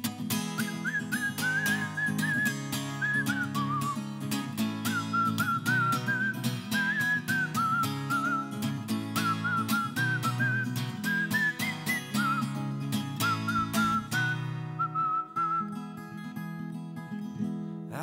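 A man whistling a wavering melody over a strummed acoustic guitar. The whistling stops about three seconds before the end, and the strumming thins out and softens.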